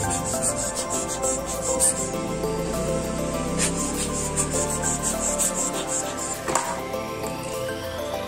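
Background music with a steady beat, over handling noise from a Kyocera M2040dn toner developer unit as its roller is turned by hand.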